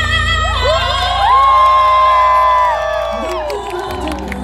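Concert audience whooping and cheering, many high voices sliding up and holding for about two seconds before dying away, over a pop backing track's bass. A singer's held vibrato note ends just before the cheer rises.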